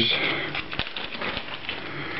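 Quiet rustling with a few small clicks from hands handling fly-tying materials: synthetic flash fibre and its plastic packet.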